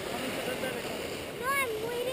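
Steady hiss of wind on the microphone, with a man saying one short word about a second and a half in.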